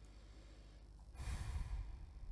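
One breath let out close to the microphone, a short rush of air lasting about half a second, a little over a second in, over faint low hum.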